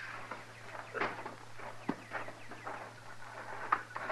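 Radio-drama sound effects: a few faint, scattered footsteps and small knocks over a steady low hum.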